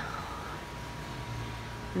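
Steady low background noise with a faint hum and a thin steady tone, and no distinct sound event; the low hum grows slightly stronger a little past halfway.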